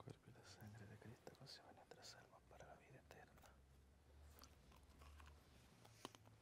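Near silence: faint room tone with scattered soft clicks, from the priest quietly handling the host and chalice at the altar during his communion.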